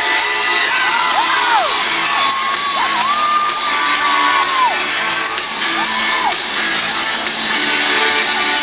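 Live band music in a large hall, with the audience cheering and long high whoops gliding up and down over it.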